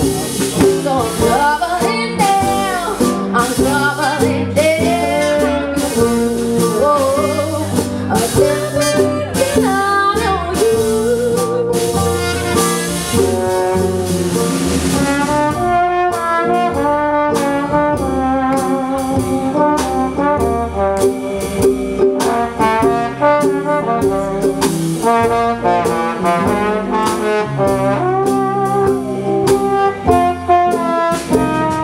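Live roots band playing an instrumental break: trumpet and trombone play the lead over upright bass, drums, acoustic guitar and mandolin. About halfway through, a fiddle comes to the front over a busier rhythm.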